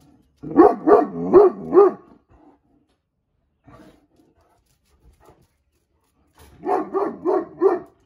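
Irish Wolfhound barking in two runs of four quick barks, one about a second in and one near the end, with a quiet pause between.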